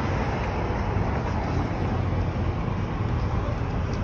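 Steady outdoor background noise, a low rumble with hiss, that starts abruptly and holds even throughout.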